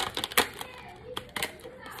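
Sharp clicks and crackles of a clear plastic lash package being handled and popped open, about four clicks, the loudest about half a second in. Children's voices argue faintly in the background.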